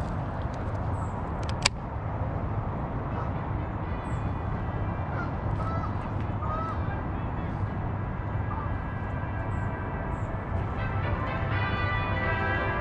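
Steady low outdoor background noise with faint bird chirps here and there and a single sharp click about a second and a half in. Near the end a set of steady ringing tones begins.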